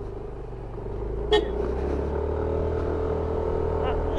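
Yamaha NMAX 155 scooter's single-cylinder engine pulling away and picking up speed, with a steady low rumble that grows louder about a second in. A brief sharp sound comes just after a second.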